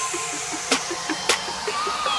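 Electronic hip-hop backing track in a passage without vocals or heavy bass: a quick pulse of short blips about five a second, two sharp percussive hits, and short sliding synth tones.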